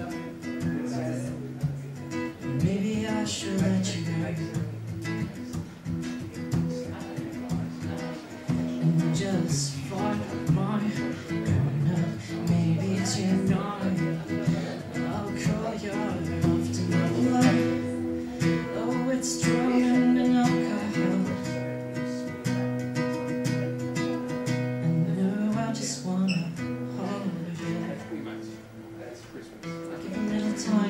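Acoustic guitar played live, chords picked and strummed over a moving run of low notes, in an instrumental stretch of the song.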